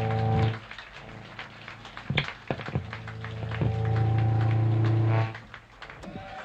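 Live electric rock trio of guitar, bass and drums: long held low notes ring out twice, with a few sharp drum hits in the quieter gap between them.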